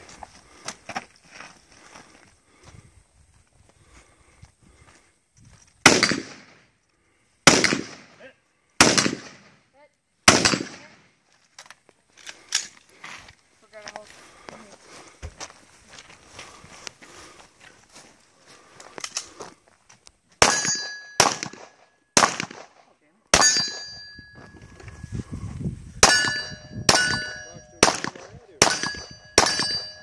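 Handgun shots fired one at a time across a course of fire, a second or more apart. There are four shots about six to ten seconds in, then a string of about nine shots in the last ten seconds. Most of the later shots are followed by the brief ring of struck steel targets.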